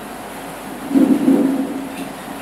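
A pause between phrases of a chanted religious recitation: the steady hiss of the recording, with one short, low voice sound about a second in.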